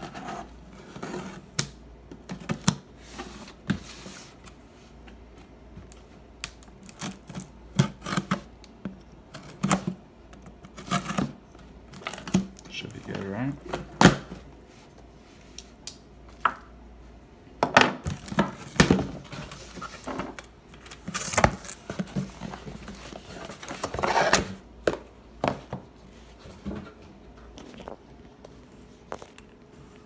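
A cardboard shipping box being cut open and unpacked: a knife slitting the packing tape, the flaps pulled open, and packing paper crinkling and tearing. It comes as an irregular run of scrapes, rustles and sharp knocks.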